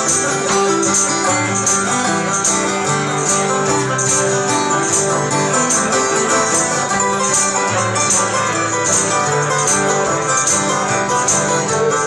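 A five-string banjo and several acoustic guitars playing together live in a bluegrass-flavoured folk-rock style: picked banjo over steady strummed guitar chords, with no singing.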